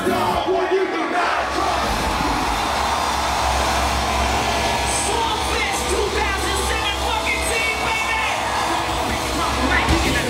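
Concert crowd cheering over band music with a steady low bass; a few voices rise above the din in the second half.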